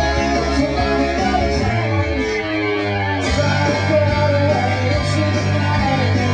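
Live rock band playing, with singing over electric guitar and a sustained bass line, and a few cymbal splashes.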